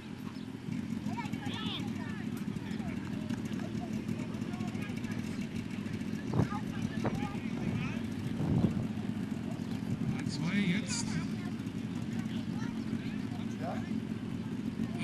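Steady drone of a fire brigade's portable fire pump engine running during a competition run, with a few louder knocks around the middle.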